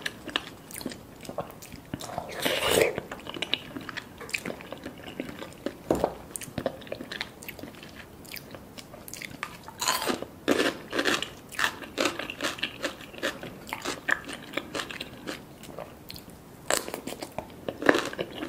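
Close-miked eating sounds of a person chewing, with bursts of crisp crunching bites. The loudest burst comes about three seconds in, and a dense run follows about ten to thirteen seconds in.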